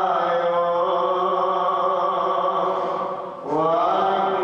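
A man chanting into a microphone in long held notes, with a short break for breath about three and a half seconds in before the next note rises.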